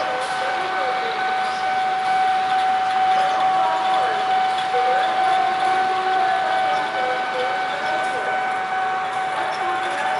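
CC 201 diesel-electric locomotive (a GE U18C) pulling a passenger train slowly out of a station, the running of the train under a steady high-pitched whine that holds without a break.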